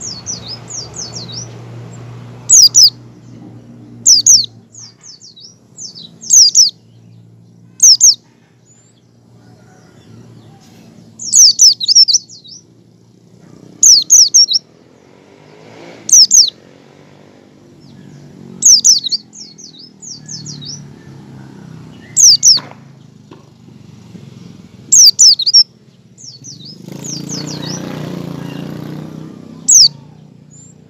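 A white-eye (pleci) singing short bursts of rapid, high, falling chirps, repeated every one to two seconds in the clipped 'ngecal' style. A low rumbling noise swells beneath the song near the end.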